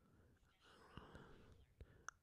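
Near silence: faint room tone with a couple of tiny clicks.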